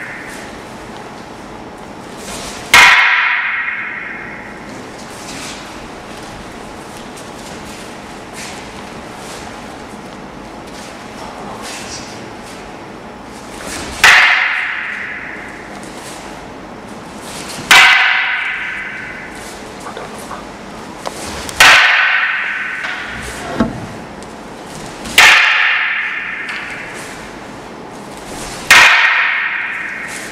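Wooden bō staffs clacking sharply together as a sideways strike meets a sideways block, six times, each clack ringing on for about a second. One comes near the start, then after a gap of about ten seconds five more follow, every three to four seconds.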